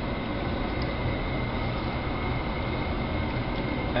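Hot oil sizzling and crackling steadily around panko-breaded katsu shallow-frying in a frying pan over a gas flame.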